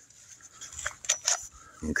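A few short, light plastic clicks as the Seesii PS610 mini chainsaw is unlatched and popped off its extension pole, in the middle of the stretch.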